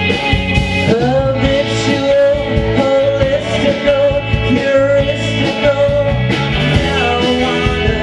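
Live rock band playing: electric guitars, bass guitar and drums keeping a steady beat, with a held lead melody that slides up about a second in and bends in pitch above the band.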